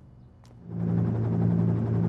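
A steady low motor drone fades in about half a second in and then holds steady, a machine or vehicle ambience opening a new scene.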